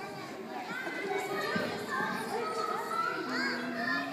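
Many young children chattering and calling out at once, their high voices overlapping, with one voice holding a longer note near the end.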